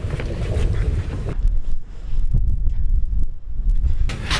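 Wind noise on the microphone: a steady low rumble that grows heavier about halfway through, with a few faint knocks.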